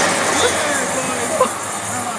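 Pacer diesel railcar running past and drawing away, its underfloor engine hum and wheel noise fading gradually.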